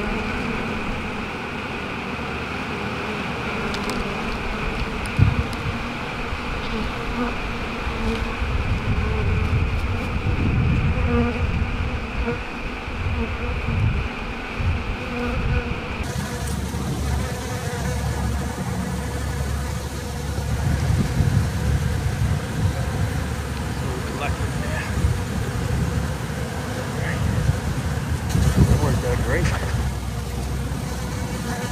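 A honey bee colony buzzing steadily, with many bees in the air around a tree limb that has been pried open to expose the comb. There is a single knock about five seconds in.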